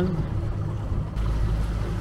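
Boat motor running steadily under way, a low even hum, with wind rumbling on the lapel microphone from about a second in.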